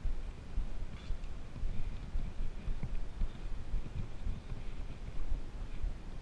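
Footsteps of a hiker walking with trekking poles down a leaf-strewn dirt trail, heard as irregular low thumps and rumble from the body-worn camera moving with each stride.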